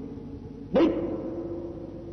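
A man's voice drawn out on a single syllable about three-quarters of a second in: a short rise and fall in pitch, then a held, slowly fading vowel.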